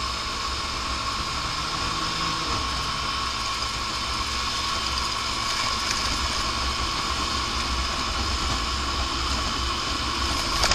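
Lance Havana Classic 125 scooter's small four-stroke single-cylinder engine running at a steady cruise, mixed with wind and road noise on the handlebar-mounted microphone.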